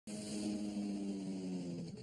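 Cartoon outboard motor on a small boat running with a steady drone and hiss, its pitch dipping and the sound dropping away as the boat pulls up.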